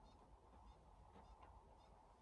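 Near silence: room tone with a low steady hum and a few very faint, brief high-pitched sounds.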